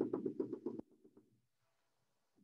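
A man's drawn-out, wavering hesitation sound on one pitch that stops a little under a second in, followed by near silence.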